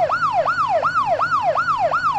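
Emergency siren sound effect in a fast yelp: its pitch sweeps up sharply and slides back down about three times a second, over and over.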